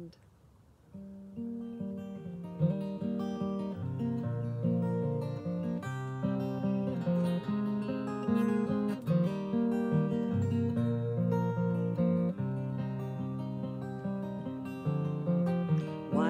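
Capoed acoustic guitar played solo as the introduction to a song, a run of plucked chords and notes starting softly about a second in and growing fuller.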